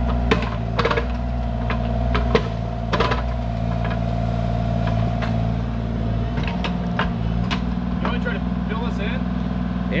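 Bobcat E35 mini excavator's diesel engine running steadily under hydraulic load, with a steady whine and the engine note shifting a couple of times. Scattered sharp clanks come from the steel bucket scraping and knocking on gravel and stones.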